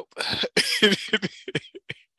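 A person's voice making non-speech sounds: a sharp breathy burst, then a run of short bursts that fade out near the end.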